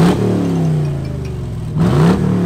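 2014 Chevrolet Camaro SS V8 revved twice: a quick rise in pitch at the start that falls away slowly, then another sharp rev near the end.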